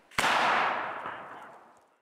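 A bronze field cannon fires a blank black-powder charge: one sudden blast a fraction of a second in, its echo dying away over nearly two seconds.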